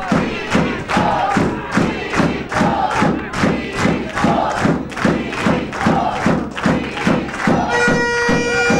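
A fast, steady drumbeat of about four strikes a second under repeated chanted vocals.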